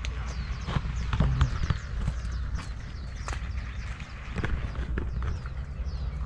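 A bicycle rolling over a wet, rutted dirt lane: scattered knocks and rattles over a steady low rumble of wind on the microphone.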